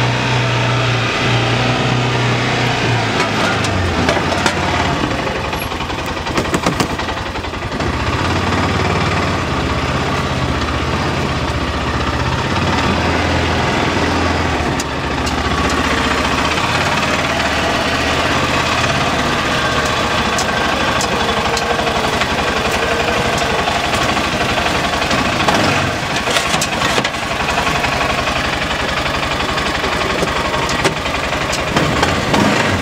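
Arctic Cat Prowler 700 XTX side-by-side's single-cylinder engine running steadily, its note shifting up and down a few times as the machine is moved into position. A few short knocks come in the middle and near the end.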